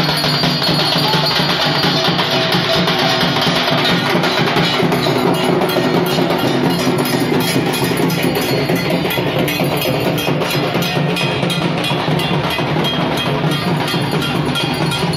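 Dhak drums beaten with sticks in a fast, unbroken rhythm, loud and continuous.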